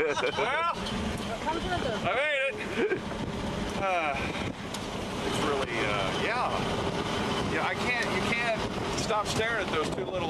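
Men talking and calling out on an open boat over the steady noise of the boat's motor and wind on the microphone.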